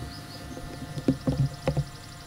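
A few short rubbing and handling sounds as a cloth rag is wiped over a steel pistol barrel, grouped between about one and two seconds in. A faint, rapid, high ticking runs underneath.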